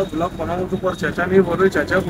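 A man talking, with no other clear sound standing out.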